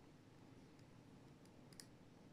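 Near silence with a few faint clicks of small magnetic balls snapping against each other as a chain of them is wound into a ring; the clearest click comes near the end.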